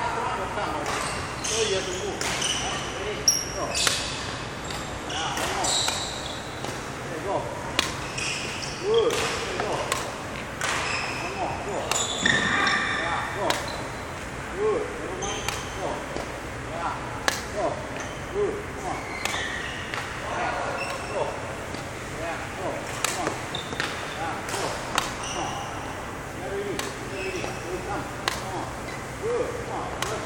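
Badminton rackets striking shuttlecocks in a rapid defensive rally, sharp irregular hits about a second apart, echoing in a large sports hall.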